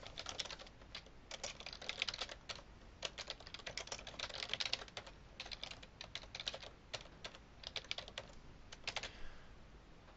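Computer keyboard typing: faint, irregular runs of quick keystrokes, stopping about a second before the end.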